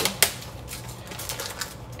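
Two sharp clicks about a quarter second apart, followed by a string of lighter clicks and taps from objects handled on a kitchen counter.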